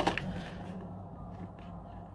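Handling noise of small cardboard perfume boxes being turned over and moved: a sharp click at the start, then a few faint taps and rustles over a low steady hum.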